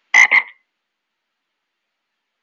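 Toad Data Point's start-up sound effect: a recorded frog croak, two quick croaks within half a second, played as the program launches.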